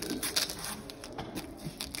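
Stiff shooting trousers rustling and scraping as the waistband is pulled closed and fastened: a run of short, scratchy noises.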